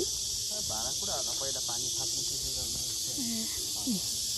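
A steady, high-pitched drone of insects, with faint distant voices in the first half.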